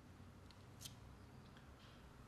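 Near silence: faint room tone with two soft, short clicks about half a second and just under a second in.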